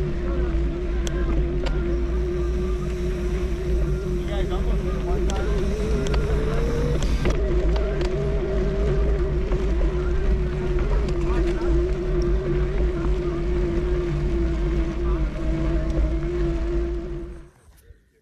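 Electric mountain bike's motor whining at a steady pitch, climbing gradually for a few seconds and dropping back suddenly, over a heavy rumble of wind on the camera microphone. It all cuts off suddenly just before the end.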